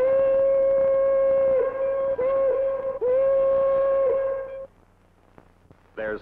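Steam locomotive whistle blowing a series of blasts of different lengths on one steady note, each blast ending with a quick drop in pitch as it cuts off; it stops about four and a half seconds in.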